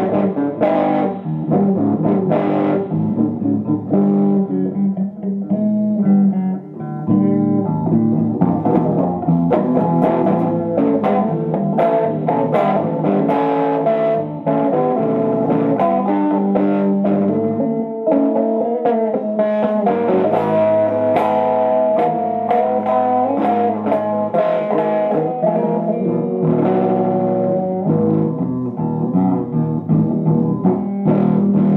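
Telecaster-style electric guitar played through a 1997 Fender Blues Junior tube combo amp fitted with a Fromel Electronics recap and mod, all amp controls at 5 and the guitar's volume full up. It plays a continuous run of picked single notes and chords without a break.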